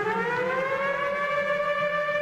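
Siren-like electronic tone in the soundtrack music, starting abruptly, gliding up in pitch and then holding as a steady wail.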